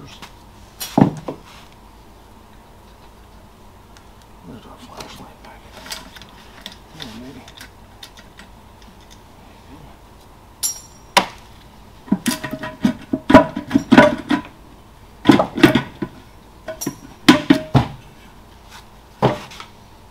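Metal parts of a Lycoming O-360 engine clanking and knocking as the oil sump is worked loose and taken off the crankcase. There is a sharp knock about a second in, then a quick run of clanks, some briefly ringing, for several seconds near the end.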